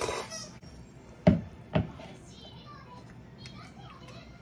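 A person slurping cold soba noodles in a short, hissing burst at the start, then two short, loud sounds about half a second apart. A child's voice is faint in the background.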